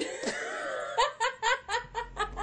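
Laughter: a loud burst, then a drawn-out laugh, breaking about a second in into a quick run of short laughs, roughly six a second.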